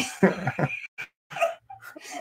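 A man and a woman laughing, in short, high-pitched broken bursts of voice.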